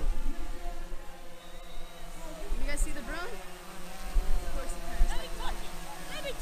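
Quadcopter drone flying overhead, its propellers giving a steady buzzing hum. Distant voices cut in over it, and wind gusts on the microphone.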